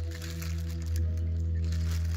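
A man's low, steady "hmmm" hum, held at one pitch while he thinks, with light crinkling of a clear plastic seed bag in his hands.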